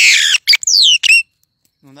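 A black-and-yellow songbird calling loudly right beside the microphone: harsh squawking notes, then a few quick whistles that slide down in pitch, stopping a little over a second in.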